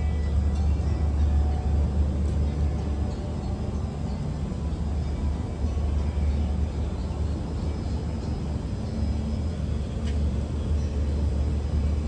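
A steady low rumble with faint background music over it.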